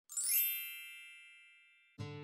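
Sparkle chime sound effect: a quick upward run of bell-like tones near the start that rings on and fades away over about a second.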